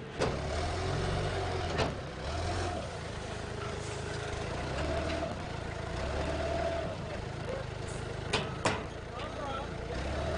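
Seed sacks being handled and loaded by hand, with a few sharp knocks, including two close together near the end, over a low rumble. Indistinct voices in the background.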